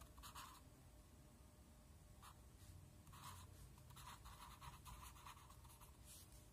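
Faint scratching of a marker pen writing on paper, in several short strokes.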